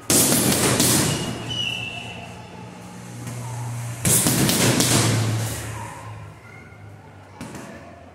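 Boxing gloves punching a heavy bag: two hard hits less than a second apart right at the start, two more about four seconds in, and a lighter one near the end, each with a short room echo.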